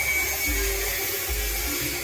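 A steady high-pitched electric motor whine over a constant hiss.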